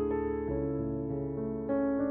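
Slow instrumental piano music: sustained chords, with new notes struck about half a second in and again near the end.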